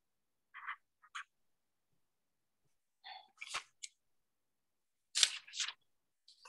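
A few short, scattered clicks and rustling noises with dead silence between them, as on a video call's noise-gated audio. The loudest comes about five seconds in.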